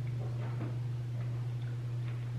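A steady low hum, with a few faint clicks of metal spoons working in a gelato pint and dish.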